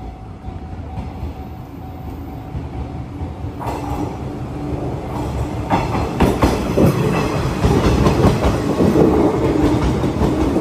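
JR 185 series electric multiple unit approaching and passing close by, its wheels clacking over the rail joints, growing louder from about six seconds in as the cars go past.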